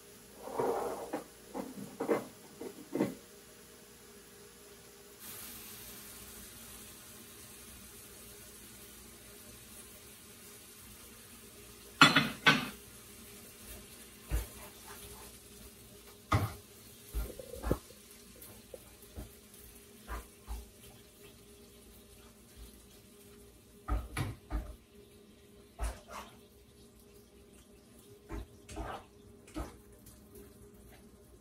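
A plastic slotted spatula scraping and knocking against a skillet as tomato sauce is stirred into ground turkey. The knocks come irregularly, with a cluster at the start and one loud clatter about twelve seconds in.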